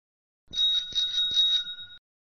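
Bicycle bell sound effect rung several times in quick succession, starting about half a second in and cut off abruptly.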